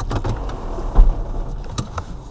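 Car cabin noise while driving: a steady low engine and road rumble. A loud thump comes about a second in, and a couple of sharp clicks come near the end.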